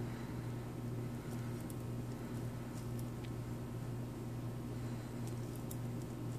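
Quiet room tone with a steady low hum, and a few faint soft ticks as a nail stamper is pressed and rolled on a fingernail.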